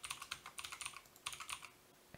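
Computer keyboard typing: a quick run of keystrokes as a short email address and password are entered, stopping shortly before the end.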